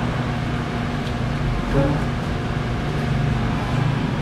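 A steady low mechanical hum with a faint higher tone over a background wash of noise, unchanging throughout.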